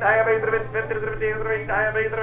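Auctioneer's rapid bid-calling chant, with a steady low hum underneath.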